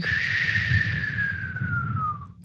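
A whistle-like whooshing tone sliding slowly down in pitch: a spacey sound effect for a mind drifting off into outer space.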